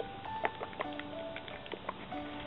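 Soft instrumental background music with long held notes, with several light clicks and taps from the paint bottle being handled, the sharpest about half a second in.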